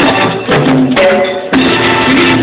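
Live salsa band playing loud, with horns and hand percussion; the sound thins out for about a second in the middle.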